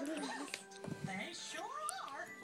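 High, whining vocal sounds that glide up and down in pitch, with one rising glide near the end, over music.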